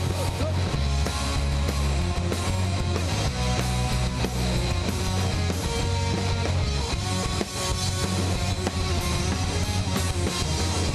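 Punk rock band playing an instrumental passage: electric guitars, electric bass and a drum kit, loud and steady throughout.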